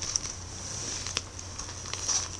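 Faint handling noise of a shrink-wrapped trading card box being turned in the hands: light rustling with a few small clicks, one a little after a second in, over a low steady hum.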